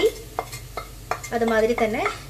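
Wooden spoon scraping and tapping ground spices off a plate into a pot of hot oil, with a few sharp knocks and a low sizzle from the oil.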